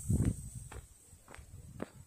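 Footsteps of a person walking, four steps about half a second apart, the first the loudest, as the walker steps off a concrete path onto dry grass.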